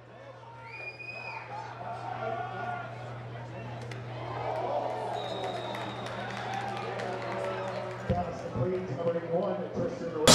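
Sound from the field at an American-style football game: several people talking and calling out at a distance, with no commentary over it. Underneath is a steady low hum that stops about eight seconds in.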